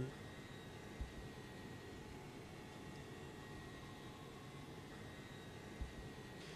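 Steady low hum and hiss of the International Space Station's cabin ventilation fans and equipment, with faint steady high tones. Two soft low bumps, about a second in and near the end.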